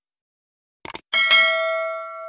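Subscribe-button sound effect: a quick double mouse click just before a second in, then a notification bell ding that is struck twice and rings out.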